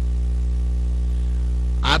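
Steady electrical mains hum with a ladder of evenly spaced overtones, carried on the audio track of an old TV broadcast recording. A man's voice begins near the end.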